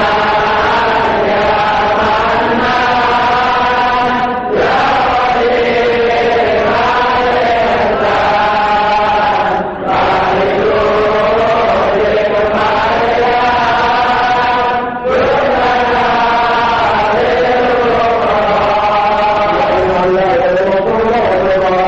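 Devotional chanting by voices in long, slow melodic phrases, each about five seconds long, with a brief breath break between them.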